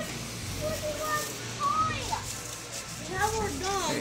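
Indistinct voices of people and children talking, faint at first and clearer in the last second.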